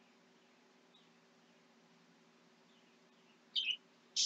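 Quiet room tone with a faint steady low hum and a few very faint high chirps, then a brief soft hiss near the end.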